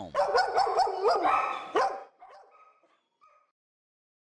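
Shelter dogs barking and yipping in a quick run of short calls for about two seconds, then fading out.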